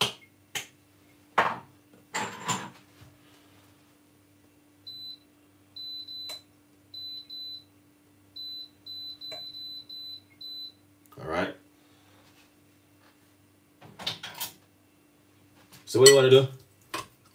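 A series of short, high electronic beeps comes in quick irregular groups, like buttons being pressed on a kitchen appliance, over a faint steady hum. Sharp knocks and handling noises come in the first few seconds and again near the end.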